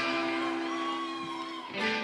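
Electric guitar on a live stage letting several notes ring and sustain, then a new, louder chord struck near the end.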